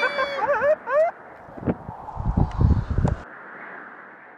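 People whooping and calling out with rising and falling voices in the first second. Then low rumbling thuds for about a second and a half, cutting off sharply about three seconds in, and a hiss that fades out at the end.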